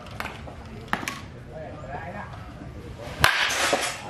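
A baseball bat swung hard in a full swing, about three seconds in: a sharp snap followed by a short rushing swish.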